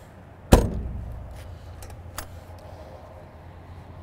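An RV's exterior storage compartment door swung shut with one sharp slam about half a second in, its low boom dying away over the next second or two. A smaller click follows a little after two seconds in.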